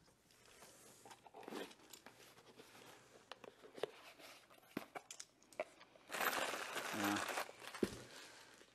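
A plastic bag of bell housing bolts crinkling as it is handled and pulled out of a small cardboard box, with scattered light clicks and taps from the box and bolts. The crinkling is loudest from about six seconds in, lasting over a second.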